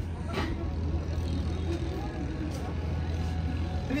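A steady low hum with faint voices in the background, and a short click about half a second in.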